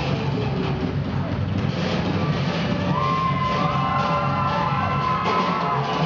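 Live rock band playing: a drum kit and electric guitar in a steady, dense wall of sound, with a sustained high note ringing for about two seconds in the second half.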